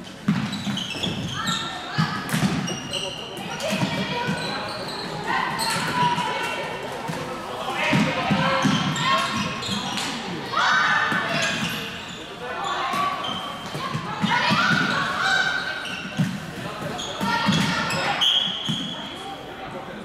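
Voices calling out across a floorball game in a large, echoing sports hall, over the sharp clicks of plastic floorball sticks and the ball on the court floor.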